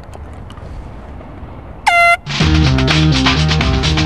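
Low outdoor background noise, then a single short air-horn blast about two seconds in, rising slightly in pitch as it starts. Upbeat music with a steady beat and a bass line starts right after it.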